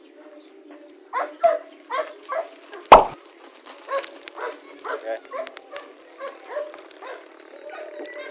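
A dog barking repeatedly in short barks and yips, several a second, with one louder sharp knock about three seconds in.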